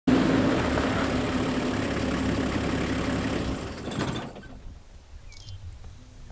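A safari game-drive vehicle's engine running steadily with a low hum. It stops abruptly about four seconds in, leaving a quiet outdoor scene with a few faint bird chirps.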